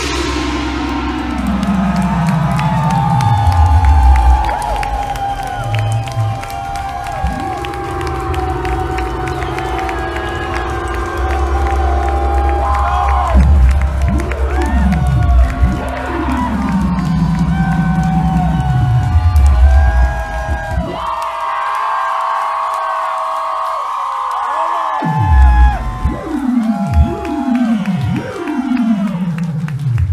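Live electronic music: synthesizer tones that repeatedly slide down in pitch, over sustained higher tones, with the crowd cheering. The deep bass drops out for a few seconds past the middle of the stretch, leaving a steady high tone, then the downward slides return in quick succession near the end.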